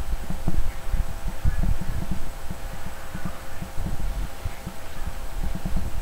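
Irregular low thuds and rumbling from handling as a disposable diaper is pressed into place and fastened on a silicone baby doll lying on a cushion, over a faint steady hum.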